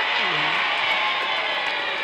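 A brass band of trumpets, horns and sousaphones playing a steady stretch of music.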